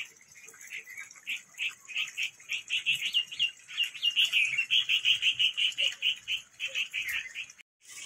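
A small bird calling: a long run of short, high chirps that quickens to about five a second, then stops suddenly near the end.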